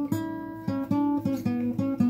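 Solo guitar: a strum just after the start, then single picked notes following one another at about four a second.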